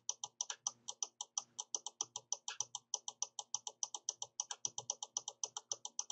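Faint, quick, even clicking of a computer mouse's scroll wheel turning notch by notch, about six or seven clicks a second.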